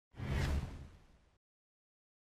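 Editing whoosh sound effect with a deep low boom underneath, swelling in sharply just after the start and fading away over about a second.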